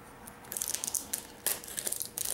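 Packing tape being cut and peeled off a small cardboard box: after a quiet start, a run of quick crackles and rips begins about half a second in.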